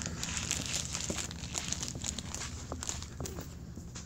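Crinkling and rustling handling noise with scattered irregular clicks, close to the microphone of a handheld phone that is being moved about.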